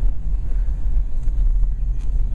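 Steady low rumble of a 2010 Chevrolet Camaro with the 3.6-litre V6, heard from inside the cabin while driving: engine and road noise.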